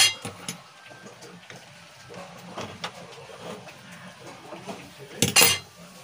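A metal utensil knocking against a metal cooking pan: one sharp clink right at the start and a louder clatter a little after five seconds, with soft scattered kitchen sounds between.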